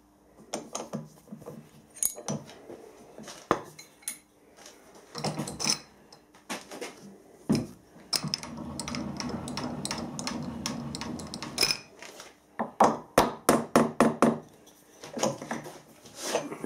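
Steel workpieces and parallels clinking and knocking in a milling machine vise as they are set up. About four seconds of steady mechanical noise sits in the middle, and near the end comes a quick run of about ten sharp metal taps.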